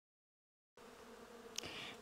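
Faint, steady buzzing of a flying insect, starting just under a second in after total silence, with a brief click about a second and a half in.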